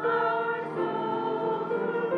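Small mixed choir of men's and women's voices singing together, holding sustained notes that change a couple of times.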